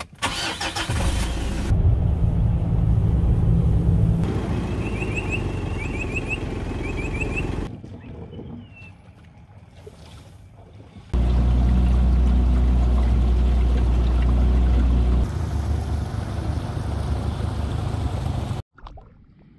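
Car engine starting, then running with a steady low rumble, heard in several segments that start and stop abruptly. It is quieter for a few seconds in the middle, and the loudest stretch is the deep steady run in the second half.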